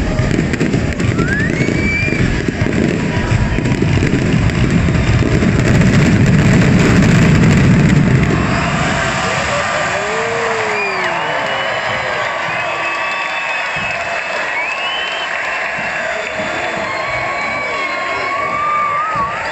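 Fireworks finale: a dense run of rapid bangs for about the first eight seconds. Then the barrage stops and a crowd cheers and whoops.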